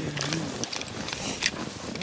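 Footsteps crunching on dry, hard snow, a scatter of short crisp crackles. A faint low murmur of a voice near the start.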